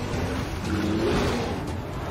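Heavy splashing of a woman and a bear running through shallow river water, a dense rushing wash of spray, with film-trailer score underneath.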